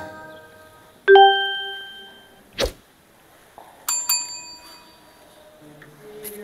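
Sound effects of an on-screen subscribe-button animation: a bell-like ding that rings on and fades about a second in, a short click near the middle, and two quick high pings around four seconds in.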